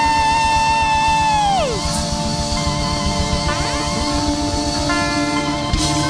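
Live gospel praise band music with a steady drum beat and guitar. A high held note rings for the first second and a half, then slides down and fades.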